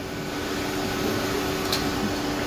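Steady rush of water and steam through a low-pressure steam boiler's blowdown valve as it is opened, purging sediment, over a constant low hum from the boiler room.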